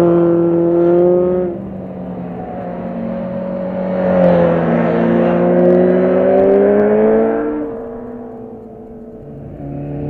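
Motorcycle engines passing through a hairpin one after another. The first fades away in the opening second and a half. A second bike's engine then rises in pitch as it accelerates through the corner from about four seconds in, and fades out near the end as another starts to come in.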